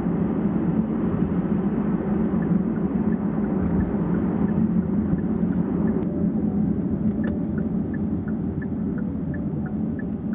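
Steady road and engine noise heard inside a moving taxi's cabin. From about six seconds in, a faint ticking about three times a second joins it, from the turn signal as the car turns off into a side lane.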